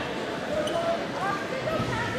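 Indistinct voices calling out in a large gym hall over a busy background of scattered thuds and room noise.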